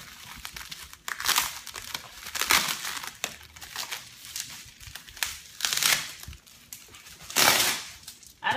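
Bubble wrap crinkling and rustling as it is pulled and bunched off a case, in several loud swishes, the loudest near the end.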